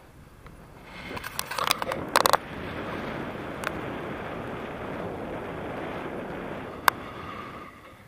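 Clicks and rattles of the handheld camera and its mount being handled and turned, then a steady rush of wind over the microphone in the airflow of a paraglider in flight, with one sharp click near the end.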